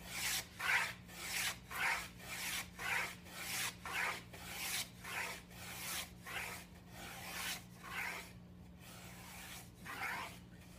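Half-scale wooden beading plane cutting an eighth-inch bead along the edge of a wood strip: quick, short, rasping strokes of the iron peeling off shavings, about two a second, until the strokes stop about eight and a half seconds in. A faint steady hum runs underneath.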